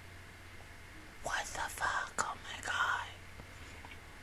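A woman whispering a few words into a close microphone through her hand over her mouth, for about two seconds starting a little after a second in; otherwise only a low steady hiss.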